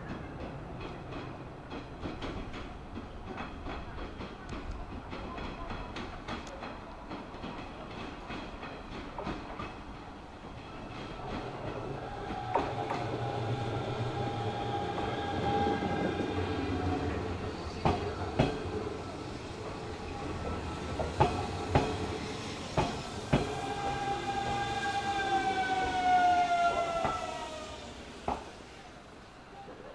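Hanshin 5500-series electric train approaching and going by, its wheels clicking over rail joints, with louder knocks as it crosses about five times in the second half. Near the end a pitched electric whine falls steadily in pitch as the train slows.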